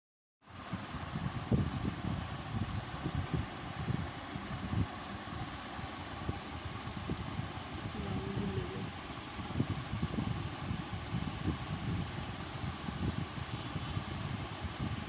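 Steady background noise with an uneven low rumble throughout.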